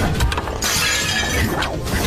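A crash with things shattering, over a music score: a few sharp strikes, then a loud burst of breaking lasting about a second, as a body is thrown into shelves of jars.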